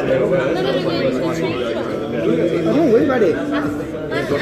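Several people talking over one another, a continuous run of indistinct chatter in a room.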